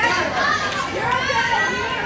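Wrestling-show crowd chattering and calling out over one another, with high children's voices among them, in a large reverberant hall.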